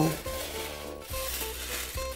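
Aluminium foil crinkling and rustling as it is folded by hand into a pouch around a fish, with quiet background music underneath.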